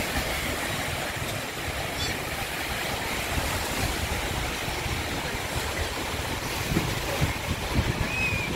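Small sea waves breaking and washing up a sandy beach in a steady rush of surf, with wind rumbling on the microphone. A few soft knocks near the end.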